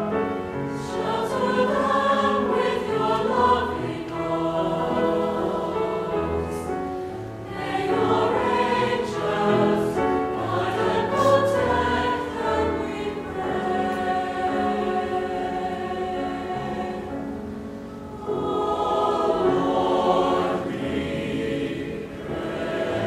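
A high school concert choir singing a choral piece in parts, the massed voices swelling and easing, with a brief dip about three-quarters of the way through before they build again.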